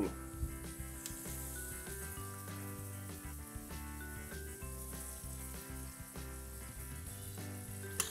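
Beef liver with butter and sliced onion frying in a hot stainless steel pan: a steady sizzle.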